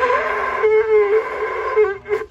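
A conch shell (shankh) blown in a long, loud horn-like note that wavers slightly in pitch and breaks off near the end.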